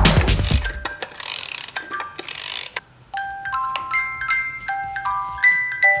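A toy music box's dial being turned with a ratcheting rasp, then the music box playing a tinkling melody of clear ringing notes from about three seconds in. Beneath it at the start, a background music track fades out within the first second.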